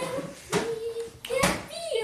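A young girl's voice singing held notes, with two sharp knocks about half a second and a second and a half in.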